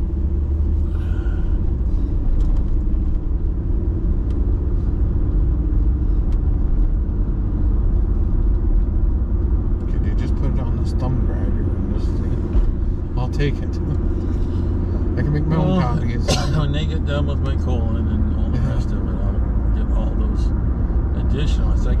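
Steady low rumble of a car's engine and tyres on the road, heard from inside the cabin while driving at city speed. A few words of voice come in about two-thirds of the way through.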